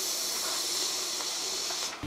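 A steady, high-pitched hiss that cuts off abruptly just before the end.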